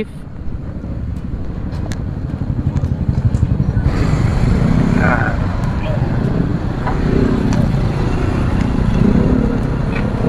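Motorcycle engine running at low speed as the bike rolls in and pulls up to a stop, a steady low rumble throughout.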